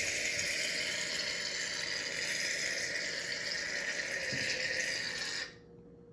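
Aerosol can of Barbasol shaving cream spraying foam into a jar of water, a steady hiss that cuts off suddenly about five and a half seconds in when the nozzle is released.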